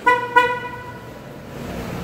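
Car horn giving two short toots in quick succession.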